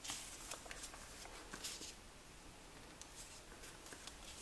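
Faint rustling and crinkling of a sheet of origami paper being folded and pressed into creases by hand, with a few soft ticks.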